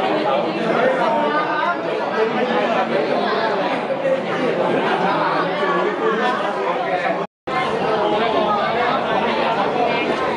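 Many voices chattering at once in a large hall, a steady babble of crowd talk with no single clear speaker. The sound drops out completely for a split second about seven seconds in.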